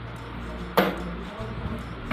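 A single sharp click about a second in, from a small part or tool handled at a workbench, over steady background music.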